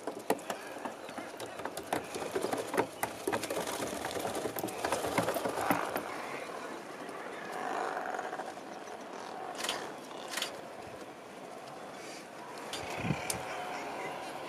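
Seabird colony of Atlantic puffins and razorbills calling, low rough calls rising and falling over a noisy background, with many sharp clicks through the first half.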